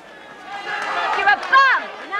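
Crowd of men talking and shouting over one another, with a loud shouted call about three-quarters of the way through.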